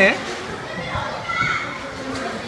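Background chatter and shouts of young children playing in a busy indoor play area, with a voice trailing off right at the start and faint high children's voices about a second in.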